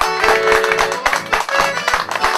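Chamamé played live on accordion with acoustic guitar and bass, the fuller band coming in at the very start with a steady, bouncy rhythm.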